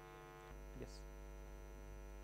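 Low-level steady electrical mains hum with a ladder of overtones, stepping up slightly in level about half a second in, with a faint short click near one second.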